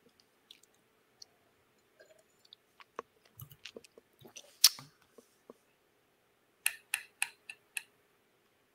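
Quiet room tone with a faint steady hum and scattered small clicks and mouth-like noises. A sharper click comes about halfway through, and a quick run of five clicks, about four a second, comes near the end.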